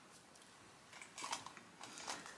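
Faint rustling and scuffing of a large crocheted blanket being stuffed into a fabric project bag, a few soft scuffs in the second half.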